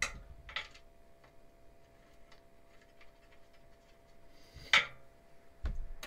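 Small clicks and taps of screws and a screwdriver being handled against a PC power supply's metal mounting bracket while it is screwed on. There are a few light clicks, a sharper click about a second before the end, then a dull knock.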